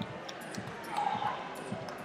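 Dull thuds repeating about twice a second, with faint voices in the background.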